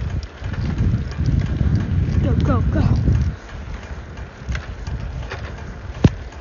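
Wind buffeting and handling noise on a phone's microphone as it is carried and moved around, loudest in the first half and easing off about halfway through, with a few light knocks.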